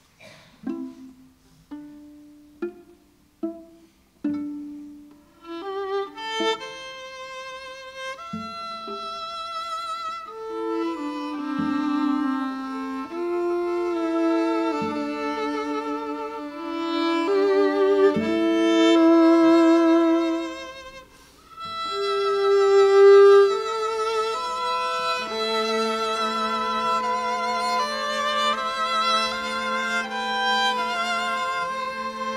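String trio of violin, viola and cello playing a slow piece that sonifies Lake Annie's data. It opens with a few short, separate notes, then moves into held notes with vibrato, dropping away briefly about 21 seconds in before coming back.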